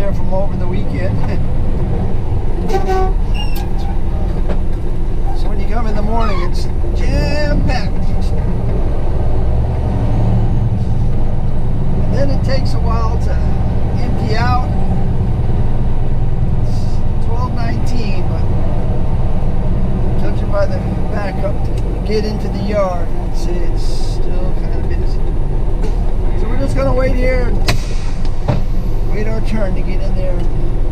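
Tractor-trailer's diesel engine and road noise heard from inside the cab while driving, a loud steady low rumble.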